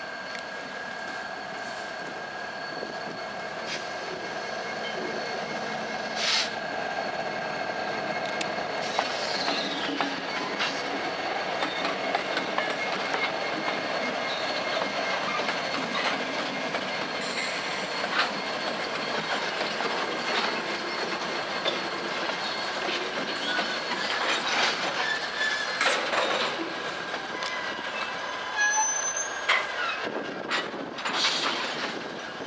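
Freight train passing close by at a grade crossing: the diesel locomotives, led by Norfolk Southern's Virginian-heritage unit, rumble past and the cars roll by, with wheels clacking over the rail joints, a steady high wheel squeal and a few sharp clanks.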